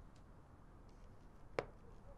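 Quiet room tone with one sharp click about one and a half seconds in, and a few faint ticks around it.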